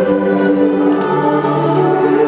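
Choir singing slow processional music in long, held chords, moving to a new chord about a second in.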